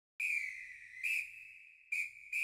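Show-intro sting: a high, steady whistle-like tone struck three times, about once a second, each note fading away before the next.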